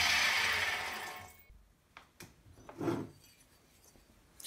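Belt grinder running and then spinning down after being switched off, its noise fading out about a second and a half in. A few light clicks and a soft knock follow.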